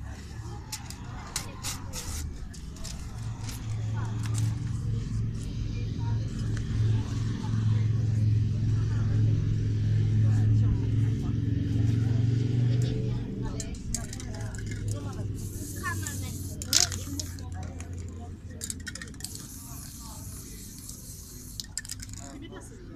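A low engine drone swells over several seconds, holds, then fades away, under the chatter of people around. A sharp click stands out about three quarters of the way through, and short hissing sounds follow near the end.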